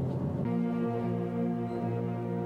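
Eighth-grade concert band: a timpani roll gives way, about half a second in, to the full band holding a sustained chord.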